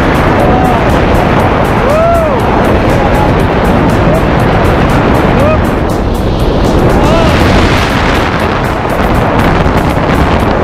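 Strong wind rushing over the wrist-mounted camera's microphone during a tandem parachute descent, a loud unbroken rush with a few short rising-and-falling tones in it.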